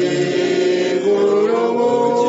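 Several voices singing together a cappella in harmony, holding long notes, with the chord shifting about a second in and again halfway through.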